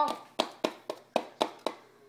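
A short cry of "Oh!" and then six sharp hand slaps on a hard surface, about four a second, which stop before the end.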